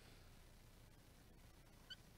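Near silence, then one very short, high squeak just before the end: a dry-erase marker on a whiteboard.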